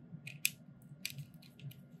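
Faint handling noise from a plastic brow pen: a few light clicks and taps, the sharpest about half a second in.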